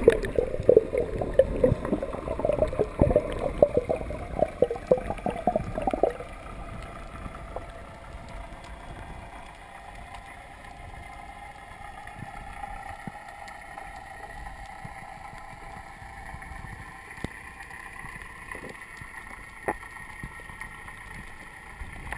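Water splashing and bubbling loudly around an underwater camera housing as a spearfisher duck-dives from the surface, stopping suddenly about six seconds in. After that the sound is muffled underwater quiet with a faint steady hum.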